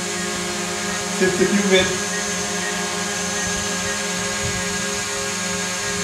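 Small folding quadcopter drone hovering, its motors and propellers giving a steady, even whine of several tones. A brief voice sounds about a second in.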